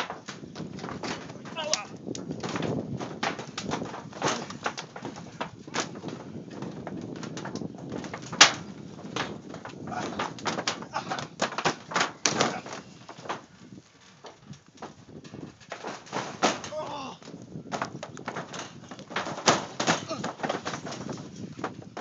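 A backyard trampoline's mat, springs and steel frame giving many irregular knocks, rattles and thumps as several people wrestle on it, with voices mixed in.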